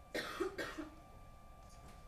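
A person coughing twice in quick succession, shortly after the start, over a faint steady electronic whine.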